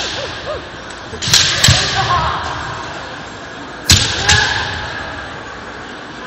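Kendo bamboo shinai strikes with stamping feet on a wooden gym floor: two pairs of sharp cracks, about a second in and again about four seconds in, each ringing briefly in the hall.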